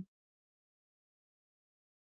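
Near silence: the sound drops out completely between two spoken phrases.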